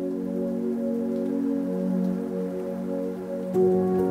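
Background music of soft, sustained chords. About three and a half seconds in it grows fuller and louder as higher notes come in.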